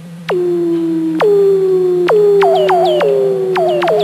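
Electronic sound effect: a run of tones that each swoop sharply down from high and settle into a held note, coming faster in the middle, over a steady low hum.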